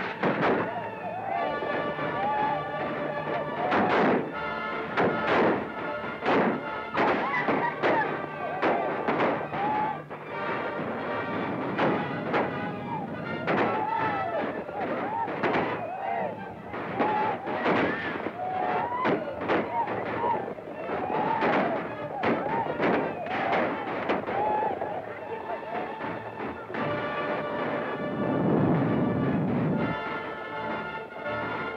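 Battle on an old film soundtrack: repeated gunshots and yelling voices over dramatic music, with no clear words.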